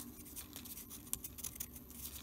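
Faint handling sounds: light rustles and a few soft ticks as small punched paper leaves are picked up from a plastic tray.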